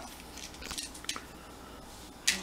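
Faint rustling and a few small sharp clicks from a small paper-wrapped packet of beads and findings being handled and unwrapped.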